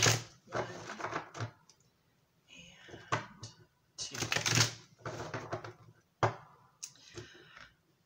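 A tarot deck being riffle-shuffled by hand, its cards flicking together in several quick rattling flurries with short pauses between.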